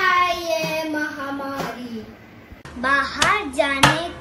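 A child's long, drawn-out call, held for about two seconds and slowly falling in pitch. Then a second child claps hands in a quick rhythm while chanting.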